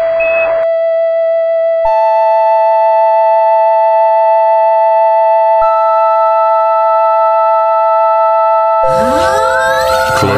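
Sustained electronic keyboard notes stacking into a chord: one held note, joined by a higher one about two seconds in and another about five and a half seconds in. Near the end a lower note enters along with a busier burst of other sound.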